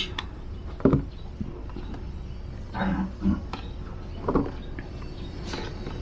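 Chickens clucking and calling a few times in short bursts over a steady low hum, with light clicks of multimeter probes being handled.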